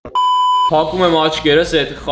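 Edited-in TV test-tone beep: one steady, pitched bleep lasting about half a second, then a voice speaking.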